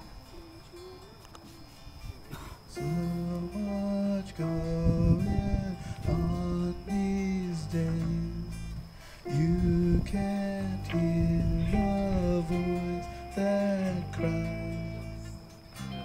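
Live country band starts playing about three seconds in: strummed acoustic guitar with a lap steel guitar's melody sliding between notes, over bass and drums.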